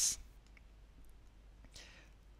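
Low, steady room tone with a faint, brief hiss near the end. The first instant holds the hissing tail of a spoken word.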